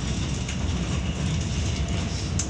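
Cabin noise of a Volvo B7RLE bus under way: a steady low drone from its six-cylinder diesel engine mixed with road and tyre noise, with a brief click about half a second in.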